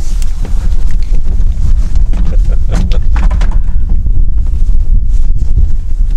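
Wind buffeting the microphone: a loud, low rumble.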